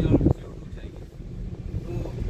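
Steady low rumble of engine and road noise inside a moving minibus. It begins abruptly about a third of a second in, cutting off a louder steady hum.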